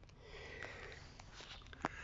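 A man sniffing or breathing in through his nose, soft and close to the microphone, followed near the end by a single sharp click.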